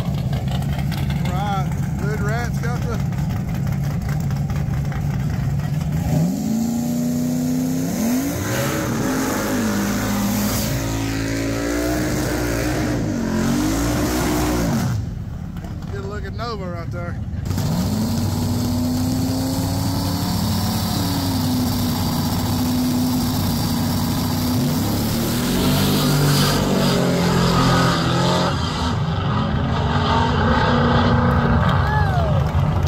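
Drag-racing car engines idling at the starting line, then revved up and down several times. Later, engines accelerating hard down the strip, rising in pitch with drops at the gear changes.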